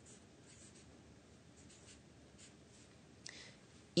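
Marker pen writing on paper: a series of faint, short scratching strokes, one a little louder just after three seconds in.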